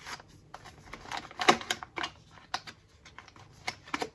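Paper and cardboard crinkling and clicking as a drip-bag coffee paper filter is handled and slid out of its box: irregular crisp ticks, the loudest about a second and a half in.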